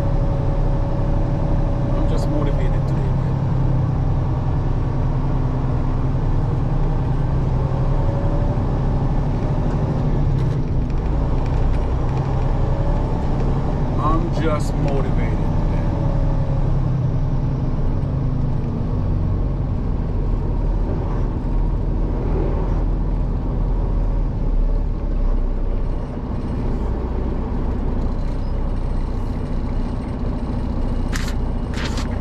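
Semi truck's diesel engine running steadily at low speed, heard from inside the cab as the truck creeps forward.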